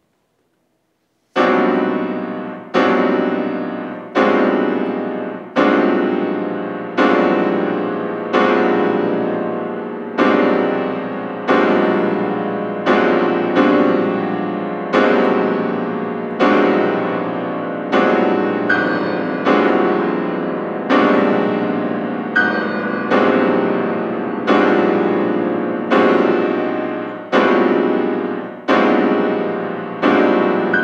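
Steinway concert grand piano, played solo: after a brief silence, loud dense chords are struck about every second and a half, each ringing and fading before the next. The chords are built on the four-note chromatic cluster (0123).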